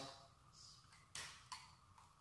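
Near silence with two faint clicks a little after a second in: a spoon touching a glass measuring jug as ghee is scraped out of it into a pan.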